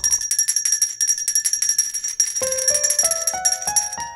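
Small metal handbell shaken fast, a rapid high ringing that thins out near the end. From about halfway, a rising run of notes, stepping up roughly three times a second, plays under it.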